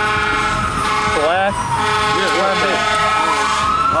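Fire engine siren wailing as the truck passes close by. Its pitch falls slowly over about three seconds and then starts to rise again. A steady blaring horn tone sounds during the first two seconds, and a faster wavering tone runs through the middle.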